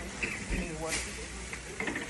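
Indistinct talking over a steady low background noise, with a few brief clicks.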